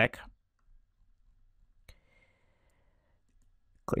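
A single computer mouse click about two seconds in, followed by a faint high tone for about a second, with near silence around it.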